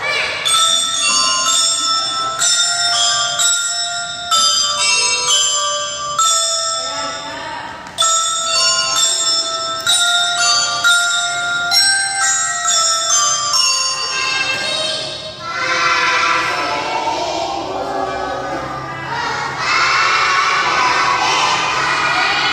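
Glockenspiels (bell lyres) of a children's drum band playing a melody of struck, ringing metal-bar notes. After about fourteen seconds the single notes give way to a denser mix with many children's voices.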